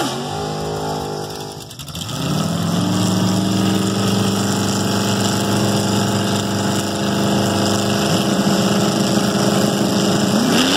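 Yellow 1979 Chevrolet Malibu drag car's engine coming down off the revs as its burnout ends, dipping briefly, then picking back up to a steady note as the car creeps forward to stage. The note wavers briefly about eight seconds in.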